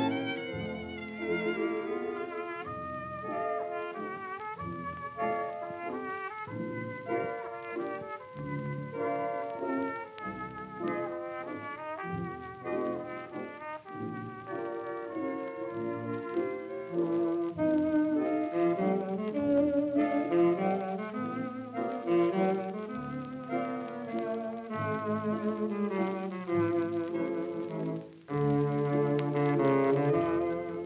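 A 1934 shellac gramophone record of a dance orchestra playing an English waltz, with brass carrying the tune.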